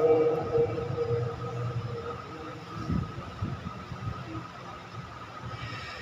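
A pause in a Quran recitation heard over a loudspeaker system: the reciter's last held note fades away as an echo over about two seconds. After it comes a steady low hum and rumble from the amplified room, with a few faint knocks.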